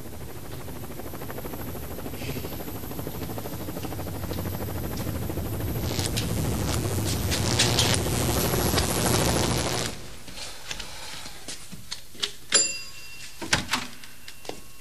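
Helicopter rotor clatter growing steadily louder as it comes in close, then cutting off abruptly. A few light clicks and one sharp knock with a short ringing follow.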